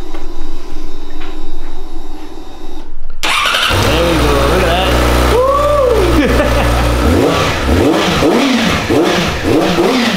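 Yamaha R6 sportbike's inline-four engine starting about three seconds in, then idling and revved several times, each rev rising and falling in pitch.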